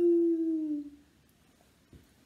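A woman's voice holding one long sliding note that falls steadily in pitch, a rocket-takeoff 'zoom' sound, fading out about a second in. A faint click near the end.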